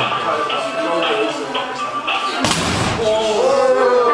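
A single heavy impact about two and a half seconds in, a spinning kick striking the punch ball of a boxing arcade strength-tester machine, ringing on briefly, over background music and voices.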